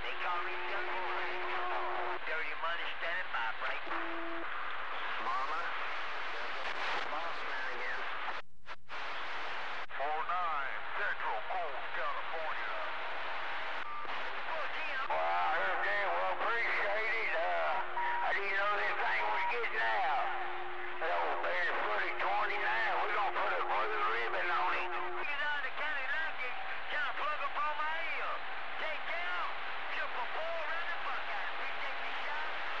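CB radio receiver with crowded, garbled radio chatter: several voices talking over one another through the static, with steady heterodyne whistles that come and go, typical of long-distance skip. The signal drops out briefly about nine seconds in.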